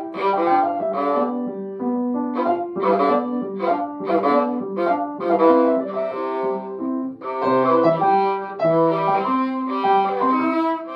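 Violin played with the bow: a melody of short separate notes, with piano accompaniment beneath.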